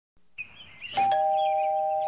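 Two-tone doorbell chime ringing 'ding-dong' about a second in: a higher note, then a lower one a split second later, both ringing on.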